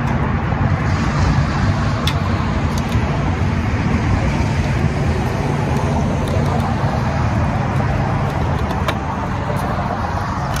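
Steady low rumble of motor vehicle noise, with a few light clicks as the small wind turbine's tail is fitted by hand.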